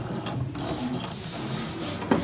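The rotary dial of an ornate brass-style decorative telephone being turned by a finger and spinning back.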